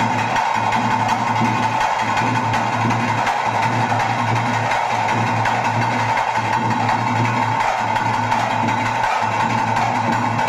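Loud drumming with a steady beat, the tase drumming that accompanies pili vesha tiger dancing.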